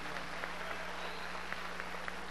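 Audience applauding, a steady scatter of clapping over a low, steady hum.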